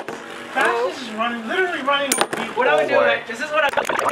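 People's voices talking and exclaiming, with a few sharp clicks between the words.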